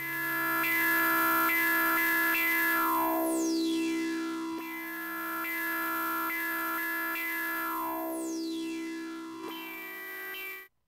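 Experimental synthesizer music: a sustained droning chord under short changing notes, with a high tone sweeping steadily downward twice, about three and eight seconds in.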